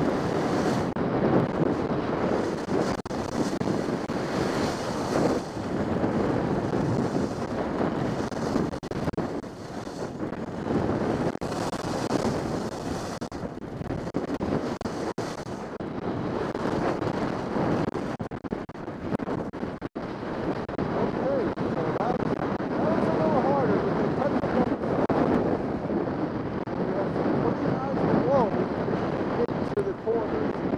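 Wind rushing over the microphone of a camera worn by a skier going downhill, a steady loud rush with brief dips.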